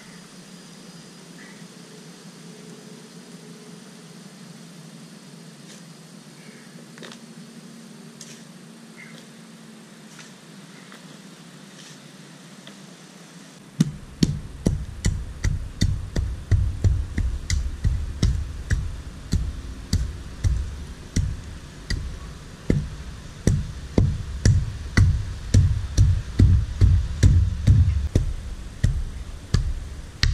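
Hand tamper pounding loose dirt: a run of low thuds, about two a second, that starts about halfway through after a stretch of faint background.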